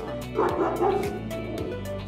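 A small Podenco Maneto dog gives one drawn-out, pitched yelping call starting about half a second in and lasting under a second, over background music with a steady beat.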